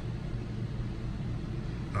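Steady low hum with a faint even rumble, and no distinct event.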